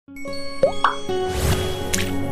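Channel intro sting: held synth music tones with cartoon pop sound effects. Two quick pops with short upward slides come just under a second in, then a swelling whoosh and a bright click near the end.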